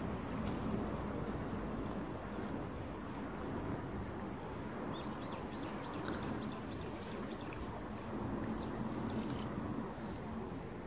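Steady outdoor background noise, over which a bird gives a quick run of about nine short, rising chirps, around three or four a second, starting about five seconds in.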